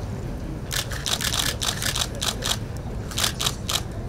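Press photographers' DSLR camera shutters firing in rapid bursts, many overlapping clicks starting about a second in, over a low room rumble.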